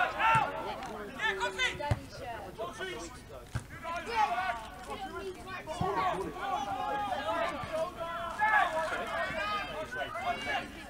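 Footballers shouting and calling to one another on the pitch during open play, with a few dull thuds of the ball being kicked.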